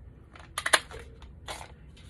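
Handheld circle punch cutting a half-circle finger notch through the edge of a vellum-backed paper insert: a quick cluster of sharp clicks as the punch goes through, a little under a second in, then a softer click about a second and a half in.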